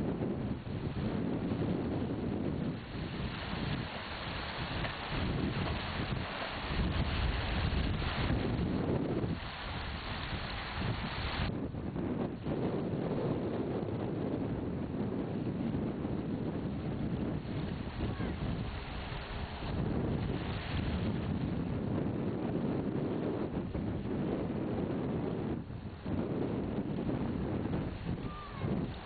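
Strong wind buffeting the camera microphone: a continuous rush of wind noise that swells and eases in gusts.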